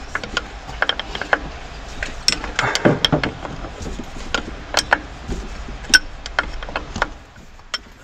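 Hand tools on metal engine fittings: irregular ratchet clicks and spanner knocks as a fitting is worked loose.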